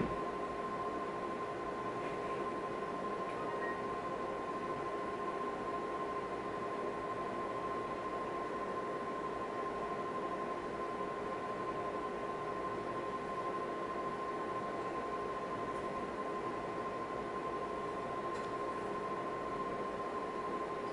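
Steady hum of an ultrasound machine's fan and electronics, with a constant thin high whine and no change throughout; a single click right at the start.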